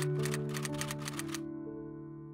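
Background music of slow, held keyboard notes, with a rapid typewriter key-clicking sound effect over it that stops about one and a half seconds in.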